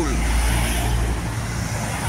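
A motor vehicle's engine running close by on the road: a steady low rumble and hum with traffic noise over it, easing slightly toward the end.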